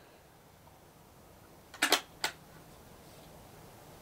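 A few sharp metallic clicks about two seconds in, a quick pair and then one more: the action of a Savage bolt-action rifle in .222 being worked as a round is readied.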